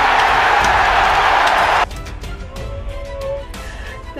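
Stadium crowd roaring as a rugby try is scored, which cuts off abruptly just under two seconds in. Background music with sustained notes follows.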